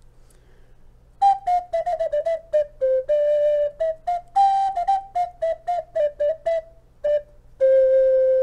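A short tune of breathy, flute-like notes blown at the mouth. It starts about a second in as a quick run of notes, holds a note briefly, and ends on a long steady note near the end.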